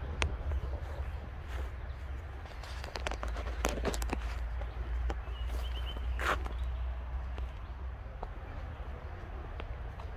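Footsteps on a dirt trail, a few scattered scuffs and crunches, over a steady low rumble of distant road traffic.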